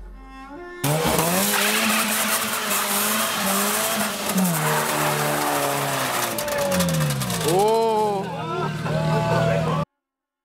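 Car engine revving hard with tyres squealing in a burnout, the engine pitch rising and falling repeatedly over a dense roar of tyre noise. It starts suddenly about a second in and cuts off abruptly near the end.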